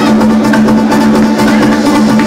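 Loud house/tech-house DJ music played over a club sound system: a held synth note runs under quick, ticking percussion.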